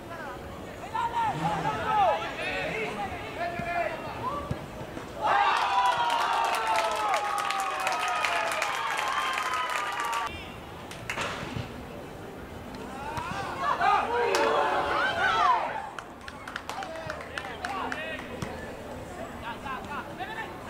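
Spectators and players at a football match shouting, with a long drawn-out cheer from several voices together lasting about five seconds in the middle, its pitch sinking slowly; shorter scattered shouts come before and after it.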